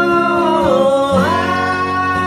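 Live acoustic duo: two acoustic guitars playing under a male voice that holds a long sung note, dipping in pitch about a second in and rising again.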